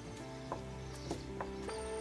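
Soft background music with about four light clicking knocks of a small wooden rolling pin on a wooden board as a dumpling wrapper is rolled out.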